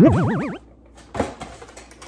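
A short warbling, bouncing tone, rising and falling several times in quick succession over about half a second, like an edited-in cartoon sound effect; a faint knock follows about a second in.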